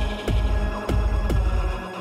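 Bass-heavy electronic dance music playing in a DJ mix: long, deep bass notes under kick drums that drop in pitch, about every half second, with light hi-hat ticks above. The deep bass cuts out shortly before the end.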